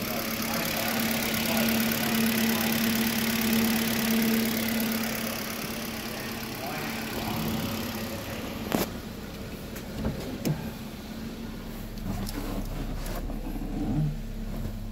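2012 Hyundai i20's 1.4-litre four-cylinder petrol engine idling steadily. It is loudest over the first five seconds or so and then softer. A few sharp clicks and knocks come in the second half.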